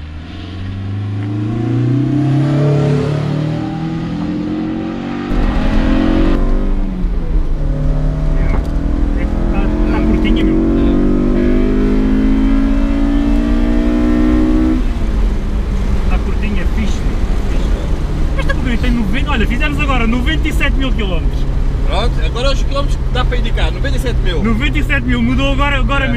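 Honda S2000's four-cylinder VTEC engine pulling hard, its note climbing steadily in pitch; about 15 seconds in it drops suddenly, as at a gear change or lift-off, and then runs at a steadier pitch.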